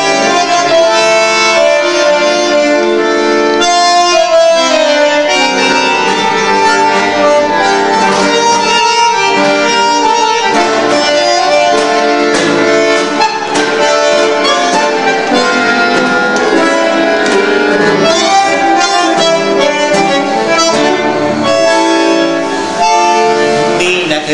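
Two bandoneons with a guitar playing the instrumental introduction of a tango, in held and shifting chords before the singer's entry.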